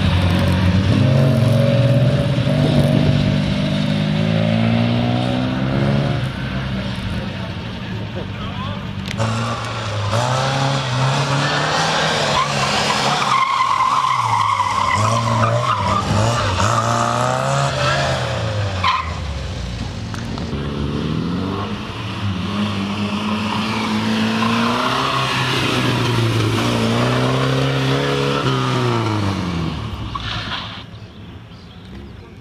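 Small classic car engines driven hard around a cone course, one car after another: revs climbing and dropping back again and again with the gear changes. Tyres squeal on the tight turns around the middle.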